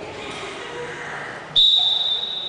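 A sudden, loud, steady high-pitched tone starts about one and a half seconds in and holds: a gym signal during a basketball timeout. Before it, low chatter of people in the hall.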